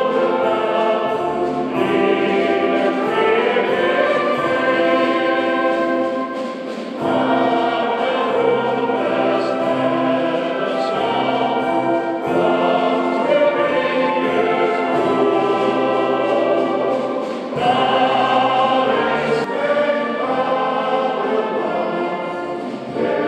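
A choir singing a slow, hymn-like song with instrumental accompaniment, in long held phrases with short breaks between them.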